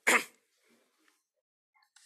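A man clears his throat once, a short sharp burst right at the start, followed by near quiet with a few faint clicks near the end.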